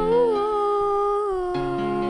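A singer holding one long sung note with a slight waver, stepping down in pitch about two-thirds of the way through, over sustained accompaniment chords.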